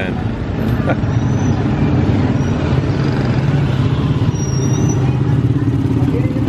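Close street traffic of small motorcycles and motorcycle-sidecar tricycles, their engines running with a steady low drone that shifts slightly in pitch as the vehicles pass.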